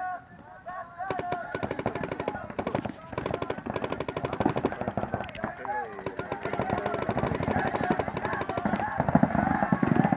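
Rapid fire from several paintball markers: a dense run of sharp pops, many per second, starting about a second in and keeping on.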